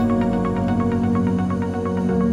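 Electronic music: held chords under a steady pulse of short notes, with the chord changing near the end.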